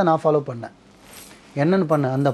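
A man talking in Tamil, stopping for under a second midway, with a faint short hiss in the pause.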